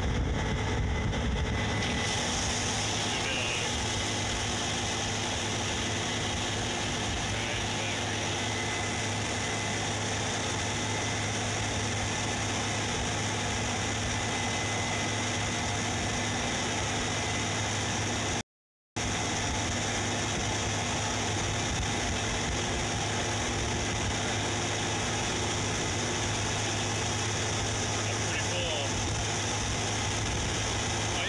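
Case IH 8250 combine running steadily with its unloading auger emptying grain into a grain cart: an even, unchanging engine and machinery drone. The sound cuts out for about half a second partway through.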